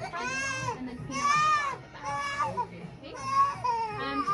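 Five-month-old baby crying in a run of high, arching wails, about four in quick succession, upset just after having her ears pierced.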